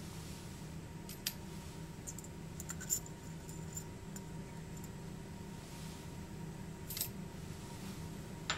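Pennies set one at a time with tweezers into a weighing boat on an analytical balance pan: a few light clicks spread out, one a little over a second in, a quick cluster near three seconds and another near the end, over a steady low hum.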